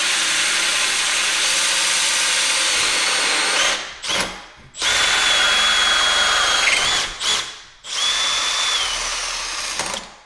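Cordless drill spinning a 2-1/8 inch hole saw through a door, boring the doorknob hole from the second side to finish the cut. It runs steadily, stops briefly three times and restarts, with a high whine from the saw in the later stretch, and stops near the end.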